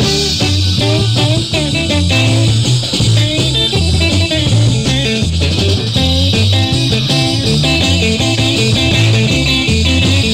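Rock and roll band playing, led by electric guitar with bending notes over a steady bass line and beat.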